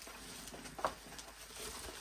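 Faint rustling of bubble wrap being handled and unwrapped, with one short squeak a little under a second in.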